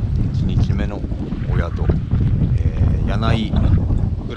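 Wind buffeting the camera microphone: a loud, continuous low rumble, with a few brief snatches of a voice over it.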